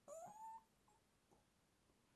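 A single short, high-pitched squeal-like voice sound in the first half second, rising in pitch, then near silence.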